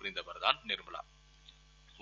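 A narrator's voice for about the first second, then a pause holding only a faint, steady electrical hum.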